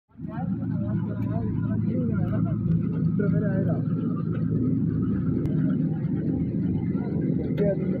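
Mobile brick-making machine running steadily with a low mechanical hum, while people talk over it.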